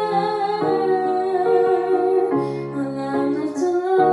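A woman singing a slow melody over piano chords, the chords changing twice under the voice.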